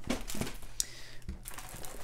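Plastic crinkling with a few light clicks and ticks as a diamond painting canvas, covered in its clear plastic film, is handled and flexed.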